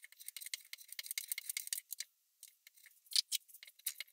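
Hand planes being handled on a wooden workbench: a dense run of light clicks and scrapes for the first couple of seconds, then after a short pause a few sharper knocks about three seconds in.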